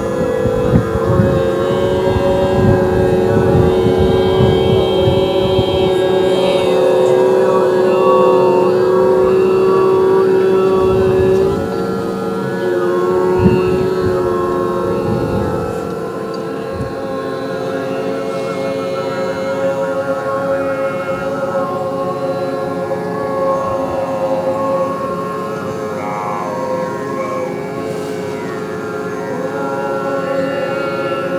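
A group of voices holding long, steady drone notes together in overtone singing, with thin high overtones sounding above the held chord. It grows quieter about a third of the way in and again around halfway.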